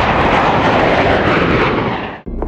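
Jet airliner flying overhead: a loud, steady rush of jet engine noise that fades out at the very end.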